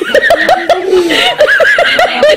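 Loud, hearty laughter from a man in quick repeated bursts, about five a second, with a second, higher-pitched laugh joining in about a second in.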